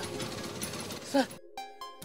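Auto-rickshaw engine idling with a rapid rattle that cuts off suddenly about one and a half seconds in, after which background music with held tones takes over.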